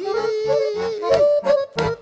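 Live Romanian folk song: a male singer holds one long "ai" note that slides up into it and falls away about a second in, over accordion and a steady beat.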